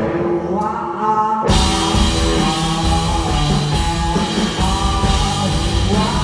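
Live rock duo of electric guitar and drum kit, with sung vocals. For about the first second and a half the drums drop out and only held guitar and voice notes sound. Then the drums and cymbals crash back in and the full band plays on.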